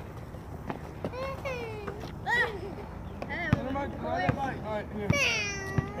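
Several short, high-pitched calls and shouts from young voices without clear words, with a longer falling call near the end ("Here"). A few sharp knocks sound between them.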